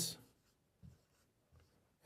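Faint strokes of a marker pen on a whiteboard: two short scratches a little under a second apart as the number is written.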